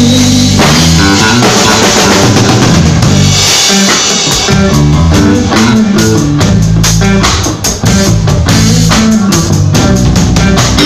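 Live rock band playing an instrumental passage with no vocals: drum kit, a stepping bass line and guitar, recorded loud. The low end drops out for about a second a little before the middle, then the drums and bass come back in.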